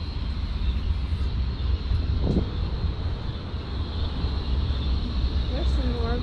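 Steady low outdoor rumble, with a short bit of voice about two seconds in and again near the end.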